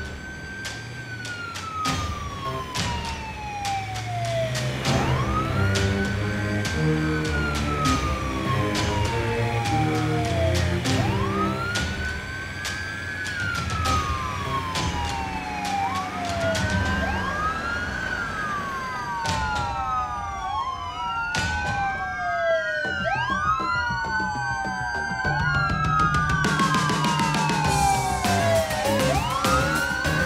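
Emergency vehicle sirens wailing, each cycle rising quickly and falling slowly, over background music. One siren at first, then several overlapping from about halfway, as more vehicles close in.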